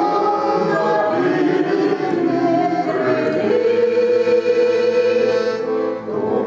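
A group of voices singing a slow song together in long held notes, accompanied by a piano accordion.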